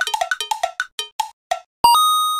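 Edited-in bumper sound effect: a quick run of short, pitched, cowbell-like plinks that slow down and thin out. Near the end a bright chime strikes and rings on.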